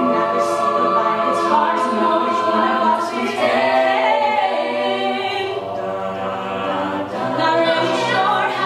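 Mixed-voice a cappella group singing sustained close chords behind a female lead at the microphone, with crisp hissing accents about twice a second through the first half.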